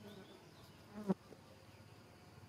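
A fly buzzing briefly past close to the microphone about a second in, over a faint outdoor background.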